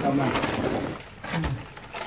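Short low voice sounds, a grunt or hum, together with rustling of clothes and scuffing against rock as people squeeze and stoop through a narrow rock passage.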